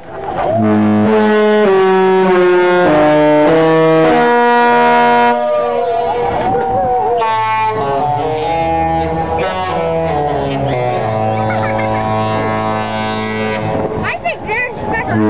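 Disney cruise ship's horn sounding a tune: a run of long, loud held notes stepping up and down in pitch.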